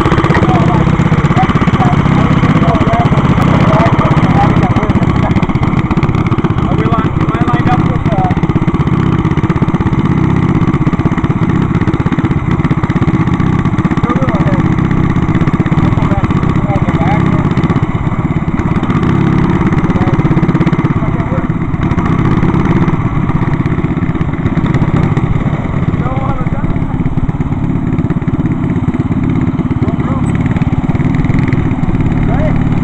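Small single-cylinder go-kart engines running steadily through open header exhausts: a ported 5 hp Briggs & Stratton and a 6 hp Tecumseh.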